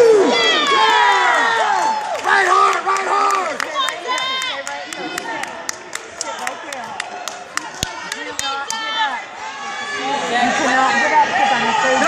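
Spectators at a wrestling match shouting and cheering, many voices overlapping, dipping a little around the middle. A quick run of sharp clicks comes through about halfway.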